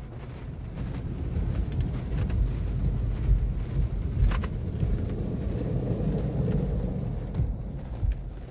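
Rotating brush of a PDQ ProTouch Tandem car wash scrubbing across the windshield and body, heard from inside the car: a low rumble with water spattering on the glass. It builds about a second in and eases off near the end.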